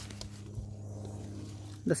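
Lawnmower engine running steadily: a low, even hum with no change in pitch.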